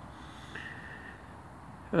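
A short pause in a man's talk: faint background hiss and a breath through the nose, then a spoken 'uh' begins right at the end.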